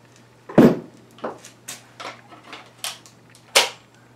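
Hard plastic clicks and knocks from an 18-volt cordless tool and its battery pack being handled. A sharp knock comes about half a second in, a run of lighter clicks follows, and another sharp knock comes near the end.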